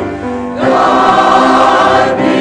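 Mixed church choir singing, with a brief lull between phrases in the first half-second before the full choir comes back in.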